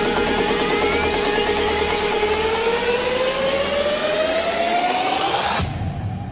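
Electronic dance music build-up: a noise riser and a synth tone gliding steadily upward in pitch, cutting off suddenly near the end.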